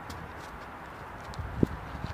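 A disc golfer's footsteps during a throw, with one sharp thump about a second and a half in.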